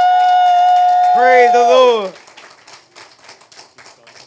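A woman's voice through the microphone holds one long, high exclamation, and a lower man's voice joins briefly about a second in. Both stop about two seconds in, leaving faint scattered clapping from the congregation.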